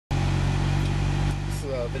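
2002 Acura MDX's 3.5-litre V6 idling steadily, a low even hum heard from inside the cabin. A man's voice starts near the end.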